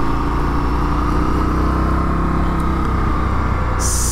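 Indian FTR 1200 S's V-twin engine running steadily as the motorcycle cruises, mixed with wind and road noise. A short hiss comes just before the end.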